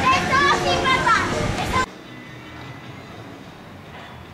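Children shouting and squealing as they play on an inflatable bouncy castle, cut off suddenly about two seconds in, leaving a faint steady background.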